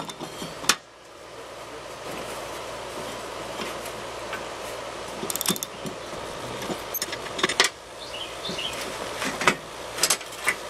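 A steel box-end wrench clinking against a mower-deck spindle pulley nut as it is worked loose. There are several sharp metal clicks at intervals, over a steady hiss.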